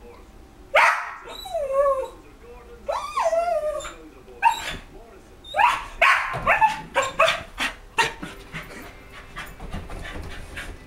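West Highland white terrier barking at a cat it has seen outside: two drawn-out cries with wavering pitch about a second and three seconds in, then a run of sharp barks that comes quickest in the middle and tails off into smaller yips near the end.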